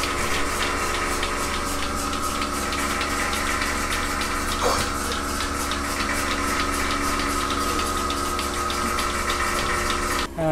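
A milking machine running on a cow: a steady machine hum with fast, regular clicking of the pulsator as the teat cups milk, and a brief squeak about halfway through.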